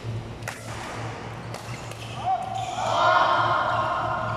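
Badminton racket striking a shuttlecock twice during a rally, two sharp hits about a second apart. In the second half a raised voice carries on for over a second, over a steady low hum in the hall.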